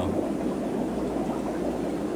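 Steady bubbling of aquarium sponge filters and air pumps, with a constant low hum underneath.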